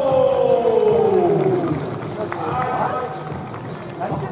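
A voice holding one long drawn-out note that slides slowly down in pitch and ends about one and a half seconds in, followed by fainter voices.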